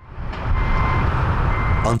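Jet airliner engines on the runway: a loud, low, steady noise that swells in over the first half second. Twice, a thin high beeping tone sounds over it, about half a second each time.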